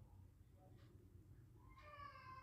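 Near silence: room tone, with a faint drawn-out high call starting near the end.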